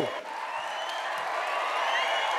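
Theatre audience applauding, with a few cheers, the applause swelling slightly as it goes.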